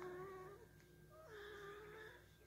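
One-week-old Shetland sheepdog puppy crying with thin, mewing whines: one drawn-out cry fading out about half a second in, and a second starting a little past halfway. The cries are faint.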